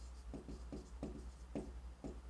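A stylus writing on an interactive display screen: a handful of faint, short strokes of the pen tip scratching and tapping on the glass, over a low steady hum.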